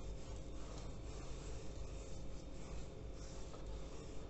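Hands rubbing a coarse salt and spice cure into raw chum salmon fillets: a faint, steady scratchy rubbing of salt grains against the fish's flesh.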